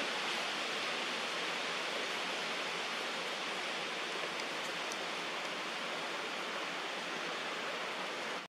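A steady, even hiss of outdoor background noise with no distinct calls or knocks.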